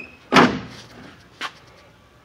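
A Tennant M20 floor scrubber's side access panel slammed shut with one loud bang about a third of a second in, followed by a smaller click about a second later.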